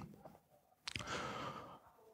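A man's faint breath or sigh picked up by a close headset microphone: a small mouth click about a second in, then a soft breath lasting under a second, with near silence before it.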